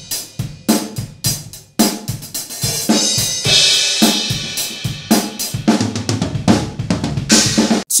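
PDP acoustic drum kit played in a steady groove: kick, snare and hi-hat strokes with crash cymbals ringing out about halfway through and just before the end. This is the kit's raw sound before it is close-miked and recorded.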